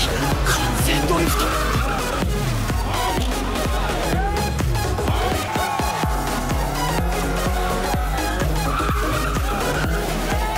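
Music with a heavy bass beat mixed with drift-car sound: engines revving up and down and tyres squealing.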